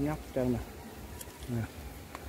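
A man's voice in three short spoken syllables, with a faint steady buzz underneath.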